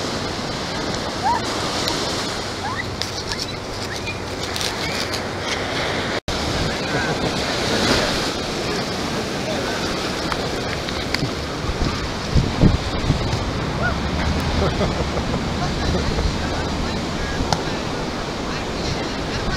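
Ocean surf washing steadily onto a sandy beach, with faint voices of people in the distance.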